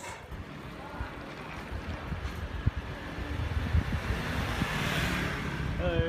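Wind rushing over a handheld camera's microphone on a moving bicycle, over a low rumble of street traffic, with a few light knocks; the rush of noise swells about five seconds in.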